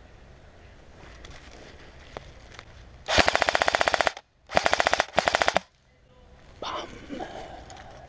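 Airsoft rifle firing on full auto: one burst of about a second, then two short bursts close together, each a rapid, even string of shots.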